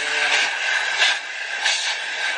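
Vacuum cleaner running steadily with a continuous hissing whine, with a few light knocks about every two-thirds of a second.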